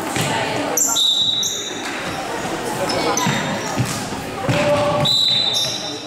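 Indoor futsal play in a reverberant sports hall: shoes squeaking briefly on the wooden floor, about a second in and again near the end, ball kicks and thuds around the middle, and shouting voices of players and spectators.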